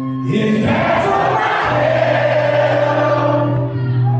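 Live concert music picked up in a hall: a band holding sustained chords over a steady low note while many voices sing together.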